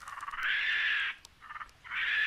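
Repeated animal calls, each lasting under a second, coming about once a second, with one short call between them.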